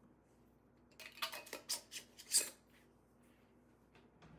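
Metal lid being screwed onto a glass jar of cocoa powder: a short run of clicks and scrapes, loudest near the middle.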